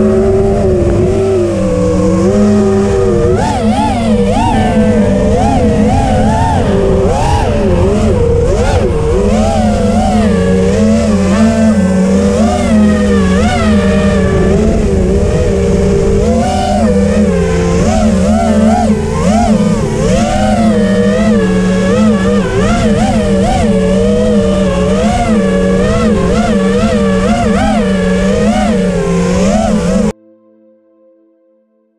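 Quadcopter's electric motors and propellers whining, their pitch constantly wavering up and down as the throttle changes in flight.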